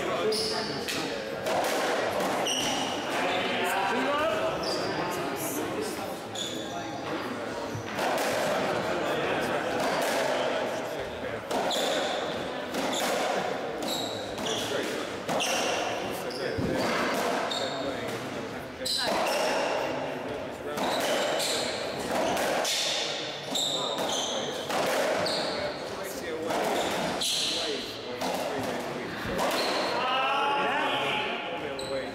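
Racketball rally: the ball struck by rackets and smacking off the court walls in quick irregular hits, with short high squeaks from shoes on the wooden floor.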